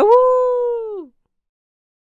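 A wolf howl sound effect: one call about a second long, holding a steady pitch and dropping off at the end.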